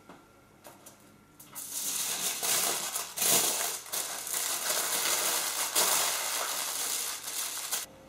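Aluminium foil crinkling as hands fold and press it around a rolled sponge cake. The crinkling starts about a second and a half in and is loud and continuous, stopping just before the end.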